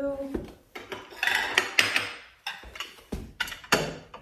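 Porcelain saucers clinking and knocking against other fine china on a cabinet shelf as they are set in place: a quick string of sharp clinks and clatters.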